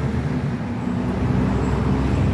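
Street traffic noise: a steady low rumble of passing vehicles.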